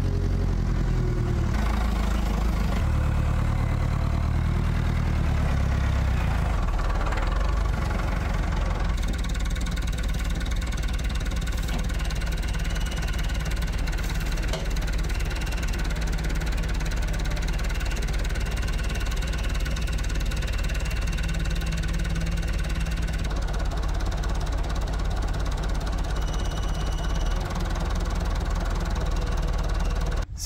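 Massey Ferguson 165 tractor engine running, its revs shifting over the first nine seconds or so, then running steadily.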